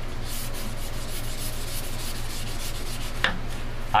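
Micro-mesh sanding pad rubbed by hand over a wet cattle horn in short, repeated strokes, a steady scratchy rubbing.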